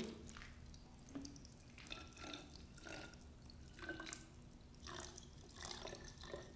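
Water poured in a thin stream from a plastic pitcher into a plastic bottle holding rocks, faintly trickling and dripping.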